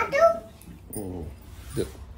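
People talking, among them a young child's high-pitched voice in short utterances.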